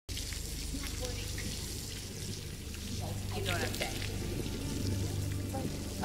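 Garden hose running, water spraying in a steady hiss, with a low steady hum underneath and a few brief voice sounds in the middle.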